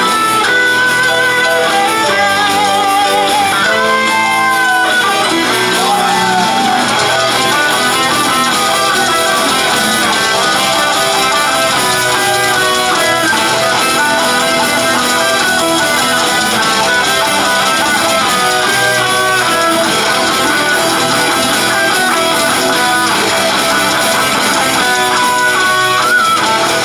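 Live rock band playing an instrumental passage: electric guitar melody lines over bass guitar, steady and loud, heard from within the crowd.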